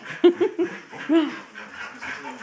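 Australian Shepherd whining and yipping in excitement: a few short, high yips, then a longer whine that rises and falls about a second in.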